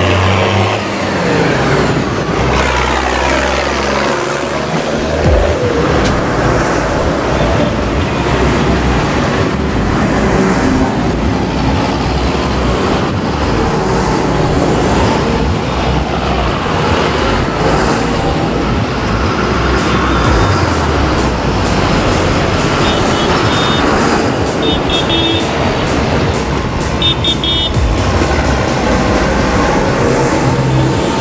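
A procession of large farm tractors, among them a Mercedes-Benz MB-trac, a John Deere and a New Holland, driving slowly past one after another. Their diesel engines run steadily under load, with tyre and road noise.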